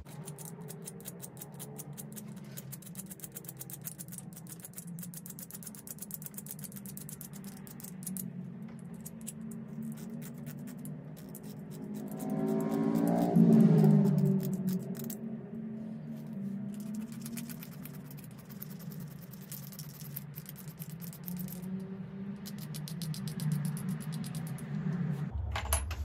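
A flint flake scraping the tip of an antler pressure flaker to narrow it, in quick repeated strokes. Under it runs a steady low hum of several tones that swells loudest about halfway through.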